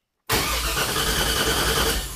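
A new starter motor cranking a truck-sourced LS V8 engine: it kicks in about a third of a second in and turns the engine over steadily without it firing.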